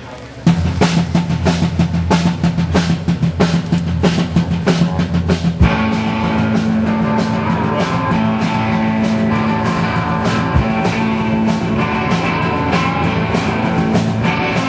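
Live rock band starting a song: a drum kit beats out a steady rhythm over a held low note, and the rest of the band comes in fuller about five and a half seconds in.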